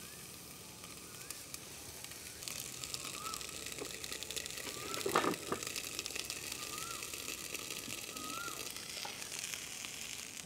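Quiet outdoor background with a steady faint hiss, and a bird giving a short rising-and-falling whistle every second or two. A single brief knock about five seconds in.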